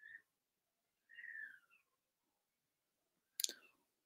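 Near silence in a small room, broken by two faint, short high chirps that fall in pitch, one at the start and one about a second in, then a single sharp click shortly before the end.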